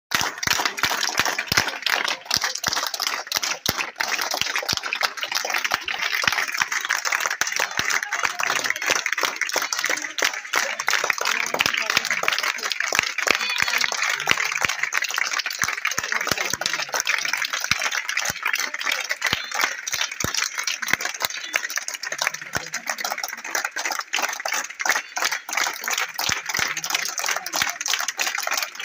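A crowd clapping continuously, the claps dense and uneven, with voices mixed in.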